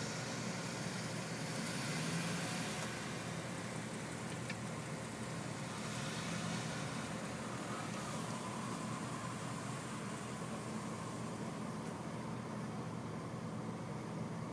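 Steady hum of car engines and traffic noise, with a car driving slowly past close by partway through.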